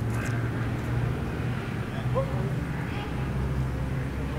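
Fuel-injected Ford 5.0 HO pushrod V8 idling with a steady low hum.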